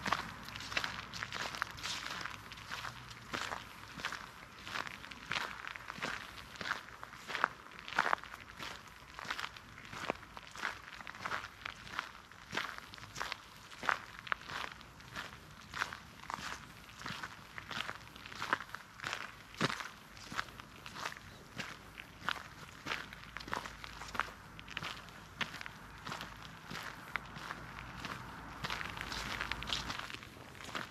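Footsteps on a gravel path strewn with fallen leaves, at a steady walking pace of about two steps a second.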